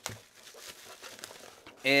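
Bubble-wrap packaging crinkling faintly and irregularly as a PC power supply is pulled out of it.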